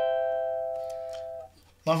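A cavaquinho strumming a single Am7/C chord (A minor seventh with C in the bass), which rings and slowly fades, then is damped about a second and a half in.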